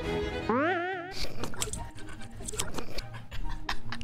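Soundtrack of a comedy meme clip. The music stops about half a second in, followed by a brief wobbling glide up and down in pitch, then a quick run of sharp clicks and knocks mixed with voices.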